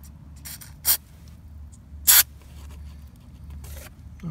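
Aerosol can of white lithium grease sprayed in three short hissing bursts onto a van's sliding-door latch mechanism, the middle burst the loudest.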